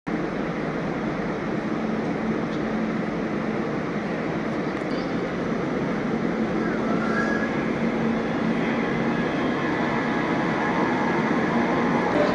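Steady rumble and hum of a Munich S-Bahn electric train at the platform, with a low steady tone under the noise, growing slightly louder toward the end.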